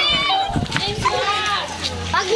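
Several children's high-pitched voices calling out and chattering together, with no clear words.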